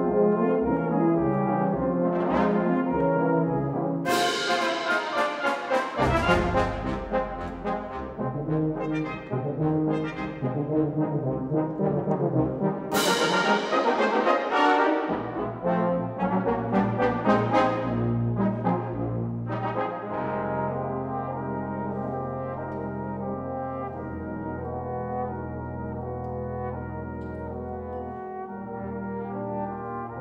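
Brass band of cornets, euphoniums, trombones and tubas playing, with two bright crashes about four and thirteen seconds in. From about twenty seconds the band plays more softly over low held notes.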